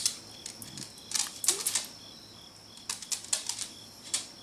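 Two brief clusters of quick, sharp clicks, the first about a second in and the second about three seconds in, over a faint high chirp that repeats about twice a second.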